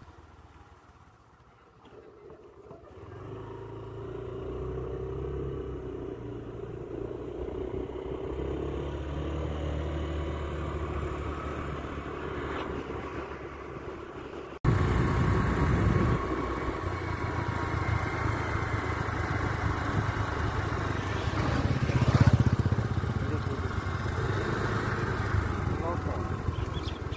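Motorised two-wheeler engine running while riding, with wind noise on the microphone. It is faint at first and builds about three seconds in. After a sudden cut about halfway through it is louder and rougher.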